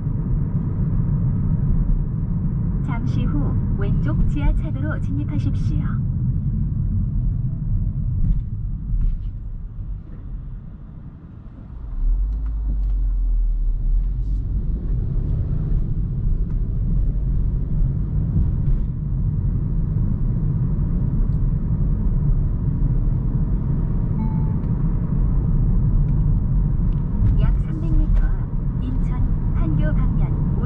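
Road and tyre rumble inside the cabin of a moving Hyundai Kona Hybrid, a steady low drone. It eases briefly around ten seconds in, then returns deeper.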